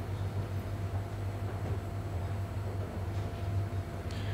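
Espresso Book Machine running during the gluing stage of binding: a steady low mechanical hum with a few faint steady tones above it, no distinct knocks.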